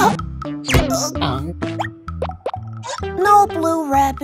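Children's cartoon background music with short plop-like sound effects and quick sliding tones. Near the end a cartoon character makes a wordless vocal sound.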